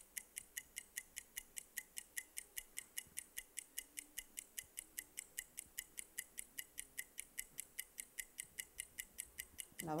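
Game-show countdown timer ticking steadily, about five high clicks a second, while contestants have time to answer a trivia question.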